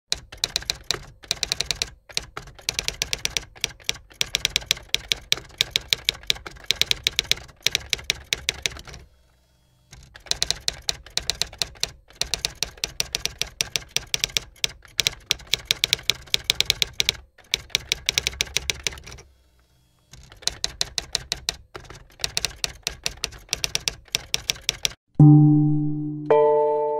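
Typewriter keystroke sound effect: rapid clacking keys in three long runs, each followed by a brief pause of about a second. Near the end, a deep bell is struck once and rings on.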